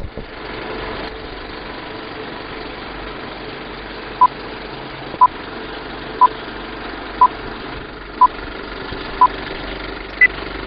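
Old-film countdown leader sound effect: a film projector's steady whirring rattle, with a short high beep once a second, six times, starting about four seconds in, counting down.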